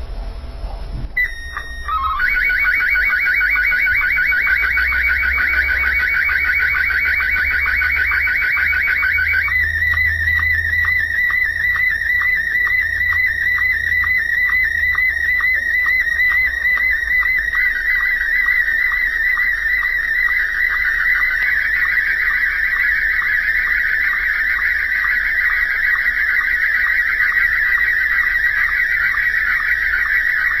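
Slow-scan television (SSTV) picture signal received by HF ham radio on the 20 m band: a few short held tones about a second in, then a continuous high, warbling and chirping stream of tones with a fast, even ticking of line-sync pulses as an image is sent line by line. The signal's texture changes about nine seconds in.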